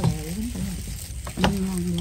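Shredded banana blossom salad and herbs being tossed by hand in a large stainless steel bowl: a crackly rustling with a few light clicks against the bowl.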